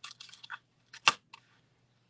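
Fine shimmer paper and cardstock rustling and sliding under the fingers as a paper strip is positioned, with one sharp click about a second in.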